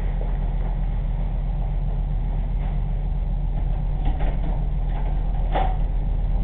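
Steady low electrical hum and hiss from a surveillance camera's built-in microphone, with a few faint clicks and knocks in the last two seconds.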